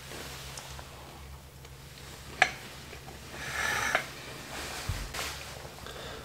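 A person chewing a mouthful of scone, with quiet mouth sounds: a sharp click about two and a half seconds in and a breathy sound a little before four seconds, over a low steady hum.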